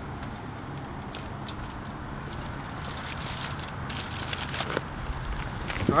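Aluminium foil crinkling and crackling in short bursts as a burrito is unwrapped by hand, over a steady low hum.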